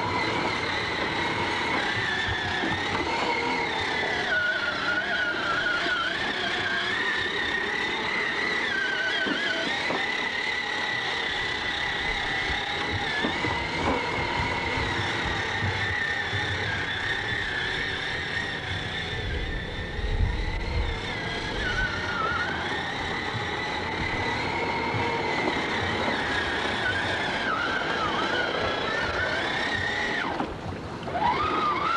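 Electric motor of a child's battery-powered ride-on toy Jeep whining steadily as it drives, its pitch sagging and recovering several times as the load changes. A brief low rumble comes about two-thirds of the way through.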